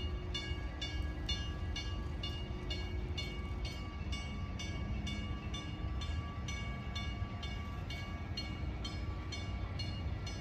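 Drawbridge warning bell ringing steadily, about three strikes a second, over a constant low rumble.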